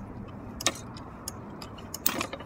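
Steady low outdoor rumble with light, quick ticking clicks, about two to three a second, and one sharper click about two-thirds of a second in.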